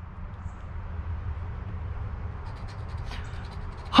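A coin scratching the coating off a scratch-off lottery ticket in a quick run of short strokes starting about two and a half seconds in, over a low steady rumble.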